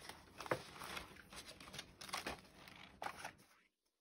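Faint rustling and crinkling of stiff paper as a page of a pop-up book is turned and its cut-paper pop-up unfolds, with a few small clicks; it stops abruptly shortly before the end.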